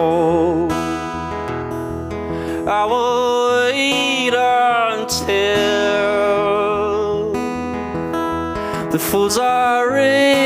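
A live acoustic song: a strummed acoustic guitar with a man singing long, wavering held notes at the microphone.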